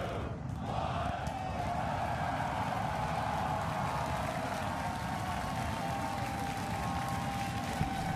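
Starship's Super Heavy booster firing its 33 Raptor engines at ignition and liftoff: a steady dense noise, strongest in the low end, that builds in the first half second and then holds. Crowd cheering is mixed in.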